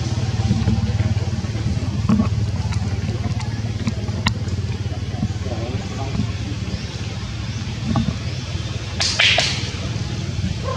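Outdoor ambience of faint people talking over a steady low rumble, with a few light clicks and a brief sharp rustling hiss about nine seconds in.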